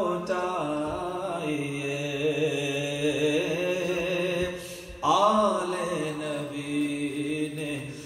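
A man's solo voice chanting a devotional Urdu kalam through a microphone, in long held, wavering notes. The phrase fades just before five seconds in and a new one begins, stronger.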